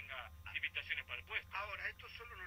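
Speech from a played-back interview recording, its highs cut off, over a steady low hum.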